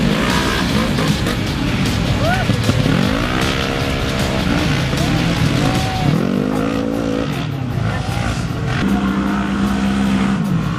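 Side-by-side (UTV) race engines revving hard and backing off as the cars slide through a loose dirt turn, the revs climbing and falling several times as cars pass.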